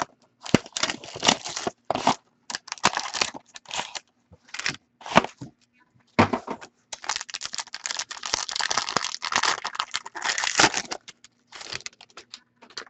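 Trading card pack wrapping being torn open and crinkled by hand. The rustling comes in irregular bursts, denser and more continuous in the second half.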